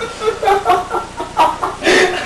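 Laughter in short, broken bursts.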